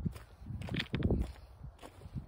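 Footsteps on a rough footpath of loose stones and gravel: a few uneven steps.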